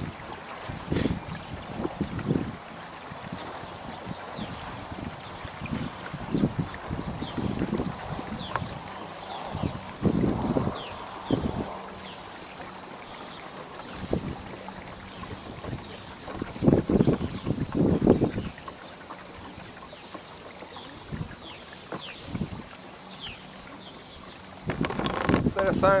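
Kayak under way on open water: irregular low thumps and swishes of water and wind buffeting the microphone, loudest in a cluster about two-thirds of the way through.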